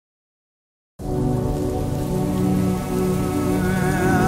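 Silence, then about a second in the intro of a song starts suddenly: the sound of rain falling with soft sustained music over it.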